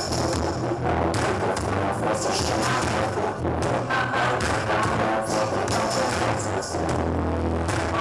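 Live band playing loud rock music with drums and deep held bass notes.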